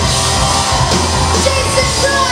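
Live pop-punk rock band playing loud: electric guitars, bass and a drum kit going full on in a steady, dense wall of sound.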